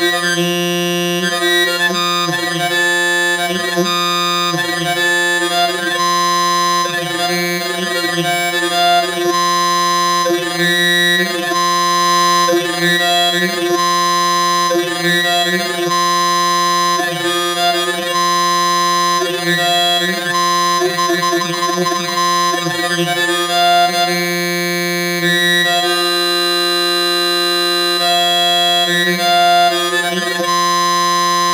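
Sustained reedy modular-synthesizer tone run through a Moon Modular 530 delay in digital mode, its delay time swept by an LFO for a flanger/chorus effect. The sweeps repeat over and over and step through points rather than gliding, because the digital mode quantizes the modulation input. A bright higher note comes and goes over the drone.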